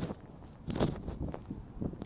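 Wind rumbling low on the microphone, with a couple of brief rustles, one about a second in and one near the end.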